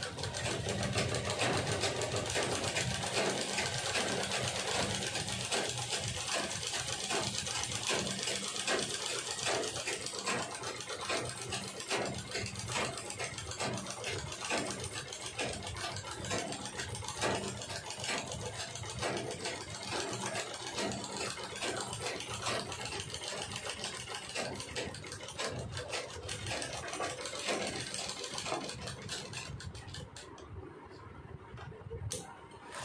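Sandeep household sewing machine stitching a long seam: a fast, steady mechanical clatter of needle strokes, a little louder in the first seconds and stopping at the very end.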